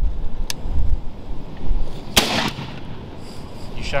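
A single shotgun shot about two seconds in: a sharp report with a short tail of echo.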